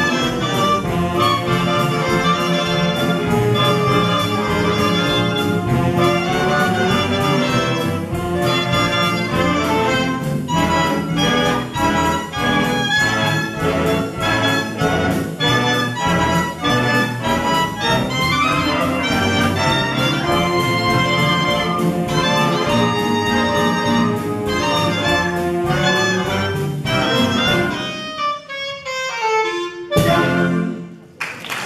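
Live big band with saxophones, brass and a rhythm section playing a swing number at a steady beat. The band winds down to its final chord near the end.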